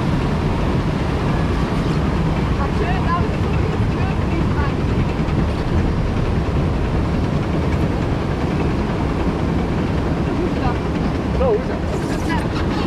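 Steady low rumble of a river rapids ride raft moving slowly through the ride's unloading station, with faint voices around it.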